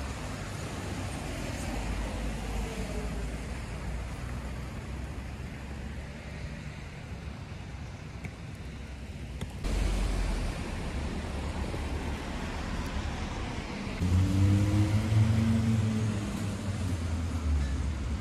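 Road traffic on a wet city street: cars passing with a steady tyre hiss on wet asphalt. About three quarters of the way through, a heavier vehicle passes close, its low engine hum the loudest sound, swelling and then fading.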